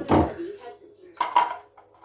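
Plastic parts of a Philips slow juicer (the auger and the clear juicing bowl) knocking and clattering together as they are handled and fitted: a loud knock just after the start, then a second cluster of clicks about a second later.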